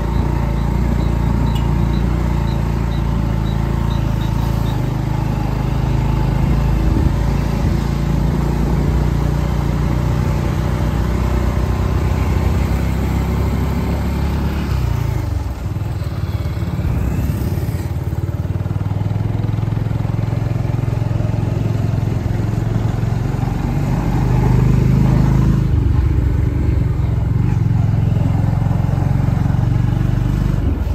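Motorcycle engine running while riding, with road and wind noise. It eases off about halfway through and picks up again a few seconds later.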